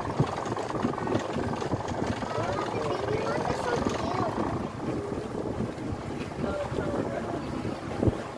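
A small boat's motor running, with wind and water noise on the microphone and voices in the background.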